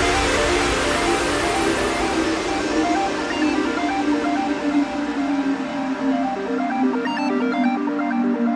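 Electronic dance music: a quick repeating pattern of synth notes over a hissy wash that fades away, with the deep bass thinning out about six seconds in.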